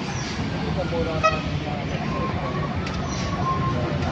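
Heavy vehicles' engines running in low gear as they climb a steep hairpin bend. A short horn toot sounds about a second in, then a thinner steady horn tone is held through the second half.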